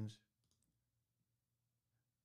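Near silence with two faint, short mouse clicks about half a second in.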